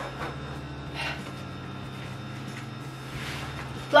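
Long zipper on a black thigh-high leather boot being undone, heard as faint rasps about a second in and again near the end, over a steady low hum.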